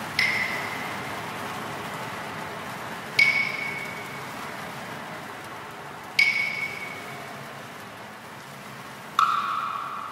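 Electronic music: four struck, bell-like pings about three seconds apart, each ringing briefly and fading, the first three at the same high pitch and the last one lower, over a soft hissing wash.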